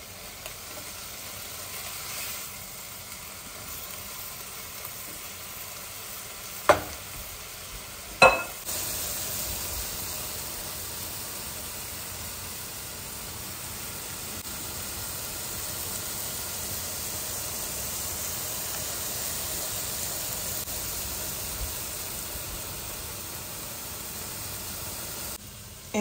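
Seasoned shrimp sizzling as they fry in a skillet, almost cooked through, with a spatula stirring them. There are two sharp knocks, about seven and eight seconds in, and after them the sizzling is louder.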